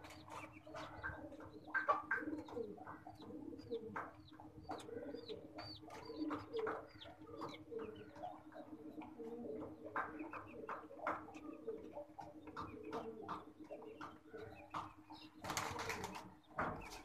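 King pigeons cooing over and over, low coos repeating throughout, with short high chirps and scattered clicks among them.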